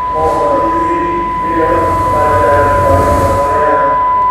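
A steady, high-pitched electronic beep held at one unchanging pitch, over music with a voice singing.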